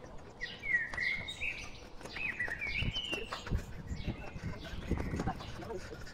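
Wild birds singing in the forest: several short, high warbling phrases, the clearest about half a second in and again from about two to three and a half seconds in. Some low thuds come in the middle.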